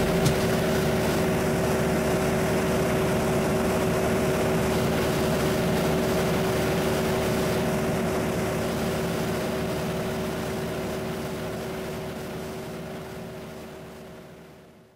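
Steady drone of a light aircraft's engine and propeller in flight, with a constant hum, fading out over the last few seconds.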